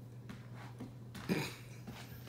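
A puppy scuffling and sliding on a hardwood floor as it twists around chasing its tail: a few soft scrapes, with one louder rustling scuffle just past halfway.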